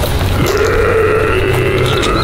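A person's long, drawn-out zombie-style groan at a nearly steady low pitch, starting about half a second in and held for about a second and a half.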